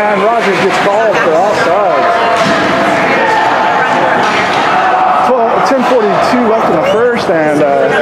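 People talking in an ice hockey arena, with several voices overlapping, and a few sharp knocks scattered through.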